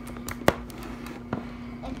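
Sharp knocks and clatter from plastic slime containers and a red plastic mixing bowl being handled on a table. There are two louder knocks about a second apart, over a steady low hum.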